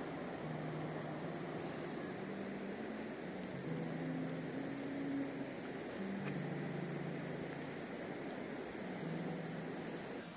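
Steady outdoor hiss of ambient seafront noise, with faint low held notes that change pitch every second or so.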